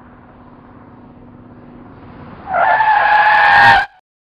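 Tyres of a Honda Accord sedan squealing under hard braking as it skids to a stop, a loud, steady screech of about a second that cuts off suddenly. Before it, the faint, slowly rising sound of the car approaching.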